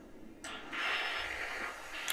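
A sudden rushing, hiss-like noise from the TV episode's soundtrack, starting about half a second in, loudest for about a second and then fading.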